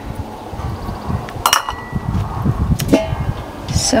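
A low rumble of wind or handling on the microphone, with two sharp metallic knocks about a second and a half and three seconds in as the lid goes onto a small charcoal kettle grill.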